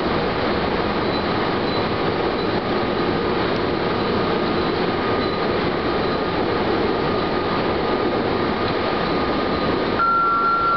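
Electric train running along the line, heard from inside the front of the train: a steady rumble of wheels on rail with a faint thin steady tone above it.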